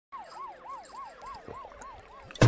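A siren-like wail whose pitch rises and falls rapidly, about four times a second.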